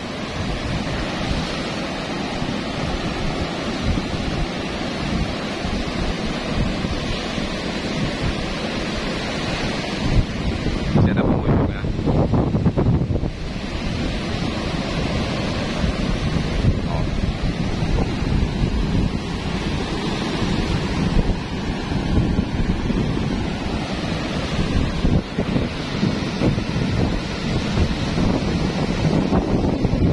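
Ocean surf breaking and washing in, a continuous rush, with wind buffeting the microphone. A heavier rumbling gust comes about a third of the way through.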